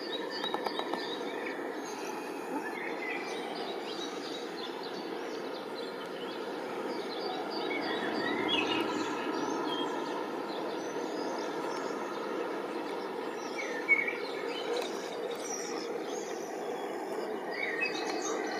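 Outdoor ambience: a steady wash of background noise with small birds chirping on and off throughout, and one short sharp click about fourteen seconds in.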